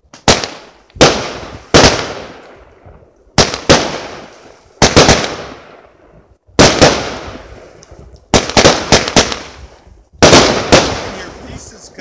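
Aerial fireworks bursting overhead: a run of loud, sharp bangs, some single and some in quick pairs or clusters, every second or two, each followed by a long echoing tail.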